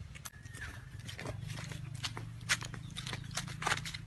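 Footsteps and knocks from a hand-held phone being carried while walking: many irregular clicks and taps over a steady low wind rumble on the microphone.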